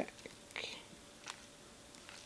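Faint handling of a paper bag mini album: a brief soft paper rustle about half a second in and a few light clicks, over quiet room tone.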